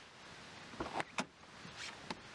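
Low hiss with a few short, faint clicks and knocks about a second in.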